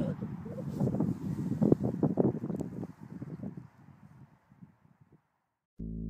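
Wind buffeting an outdoor camera microphone in low, gusty rumbles that fade away after about three and a half seconds.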